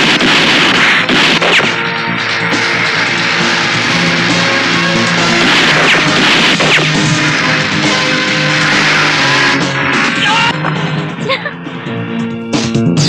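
Film background score with sustained low notes, mixed with loud noisy sound effects. The effects swell near the start and again about six seconds in, with a few sharp hits.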